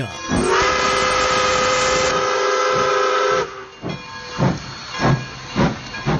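Steam locomotive whistle: one long blast of about three seconds over hissing steam, its pitch rising slightly as it opens. It then drops to a quieter hiss with soft chuffs about every half second.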